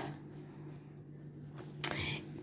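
Faint rustle of cross-stitch fabric being handled and folded back, over a low steady hum, with a short sharp hiss near the end.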